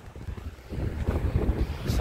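Wind buffeting the phone's microphone: an uneven low rumble that grows stronger after the first half-second or so.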